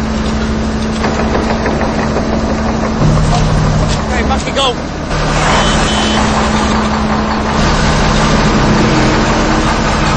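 A heavy vehicle engine running steadily. Its note steps up and down a few times as the revs change.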